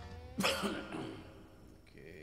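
A man coughs close to the microphone: a sharp cough about half a second in with a smaller one right after, as the last held note of guitar backing music fades out.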